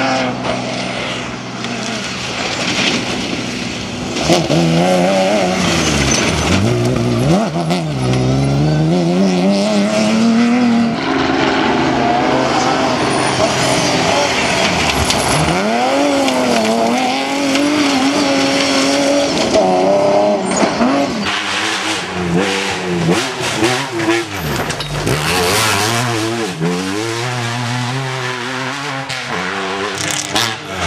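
Off-road cross-country rally cars racing past on a loose gravel stage, their engines revving up and dropping back again and again as they work through the gears, with tyres throwing gravel.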